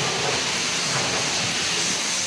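A steady rushing hiss with a low hum underneath, heard inside a pickup truck's cab.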